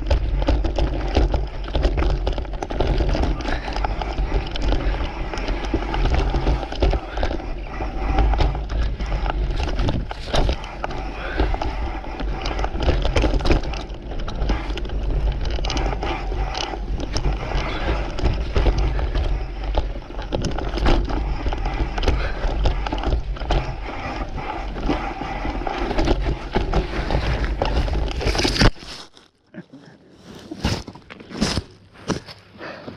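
Mountain bike riding down dirt woodland singletrack, heard close to the handlebars: tyres on dirt and the bike rattling over bumps, under a heavy low rumble on the microphone. A sharp knock comes just before the end, and then the sound cuts off suddenly.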